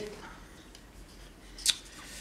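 A single short, sharp click about one and a half seconds in, over quiet room tone.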